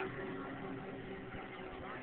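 A speedboat's engine running at a steady pitch.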